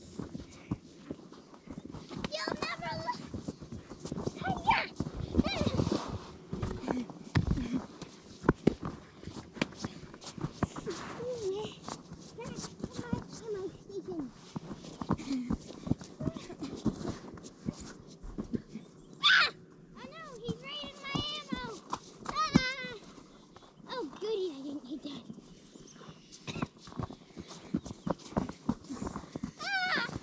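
Footsteps crunching on snowy ice close by, with high-pitched children's voices calling out; the loudest cry comes about two-thirds of the way through.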